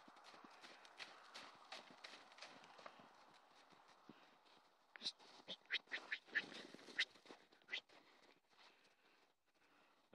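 Faint, irregular hoofbeats of loose horses moving through snow. A run of sharper clicks comes about halfway through.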